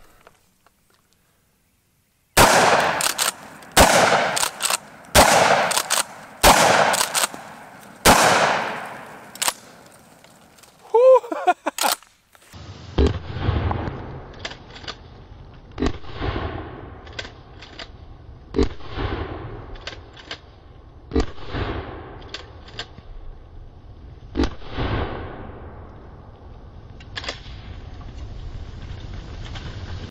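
12-gauge pump-action shotgun firing buckshot in a quick string of shots about a second apart, each with an echoing tail. About halfway through, a slowed-down replay follows: the shots come back deep and drawn out over a low rumble.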